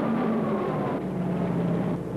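Aircraft engines droning steadily, with a held tone that eases slightly down in pitch.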